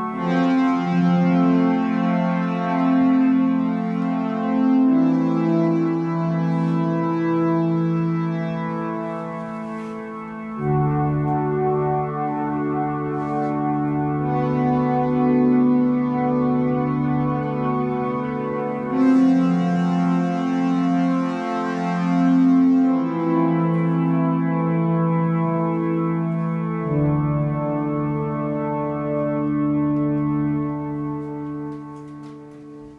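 Live string ensemble of cello, two violins and viola playing slow, sustained chords that change every four to five seconds, with a deeper bass note entering at some of the changes.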